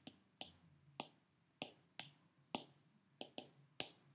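Faint key clicks of an iPad's on-screen keyboard as a search term is typed, about nine short, sharp clicks at uneven spacing, one per key press.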